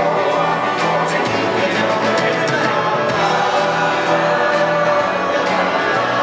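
Live band music: two voices singing in harmony over strummed acoustic guitar, electric guitar and a steady drum beat with hi-hat strokes.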